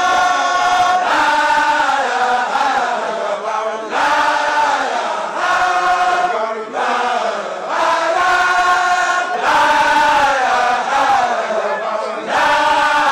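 A group of men chanting in chorus: a Baye Fall religious chant sung in short repeated phrases, each phrase rising and falling in pitch, with brief breaks between them.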